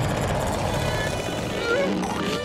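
Low, rumbling growl of a cartoon monster.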